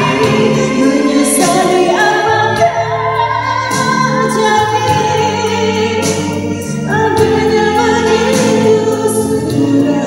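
A woman singing a Malay pop ballad into a microphone, amplified through a PA system over a karaoke backing track, with long held notes.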